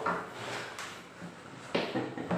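A pause in a man's animated talk: his voice trails off, faint room noise follows, and a short sharp sound comes near the end, just before he speaks again.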